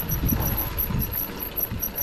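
Mountain bike riding over a leaf-covered dirt trail: tyres rumbling on the ground with irregular low knocks from bumps, and wind buffeting the camera microphone.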